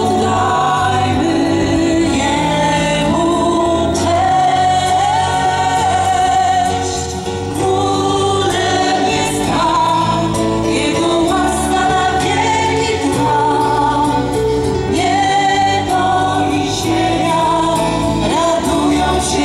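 Live Christian worship song from a band with several singers, played through a stage sound system.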